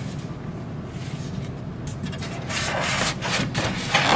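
Styrofoam panel rubbing and scraping against the styrofoam cooler lining inside a plastic tote as it is pushed into place, a run of short, irregular scrapes starting about halfway through.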